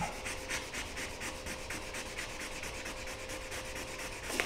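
Sandpaper on a hand block wet-sanding the clear coat over a fiberglass bass boat's gel coat in quick, even back-and-forth strokes, about four or five a second. The extra clear coat's high spots are being sanded down level with the surrounding finish.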